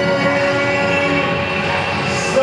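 A male singer holding a long, steady note into a microphone over an orchestral backing track.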